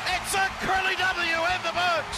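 Radio play-by-play announcer shouting excitedly over a cheering stadium crowd: the call of a walk-off winning run.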